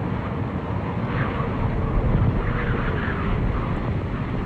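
Steady low rumbling outdoor noise, with faint higher chirp-like sounds through the middle.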